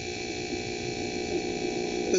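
Steady electrical hum with hiss, made of several constant tones, in the background of an old sermon recording during a pause in the speech.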